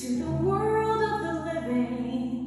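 A woman singing a Broadway show tune in a sustained, full voice over an instrumental backing track.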